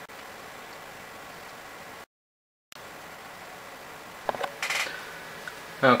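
Steady low hiss of room noise, broken by a moment of dead silence about two seconds in where the recording cuts. A few faint clicks and scraps of sound come about four to five seconds in.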